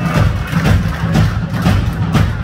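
Live rock band playing an instrumental vamp: drums hitting a steady beat about four times a second over a sustained low bass line.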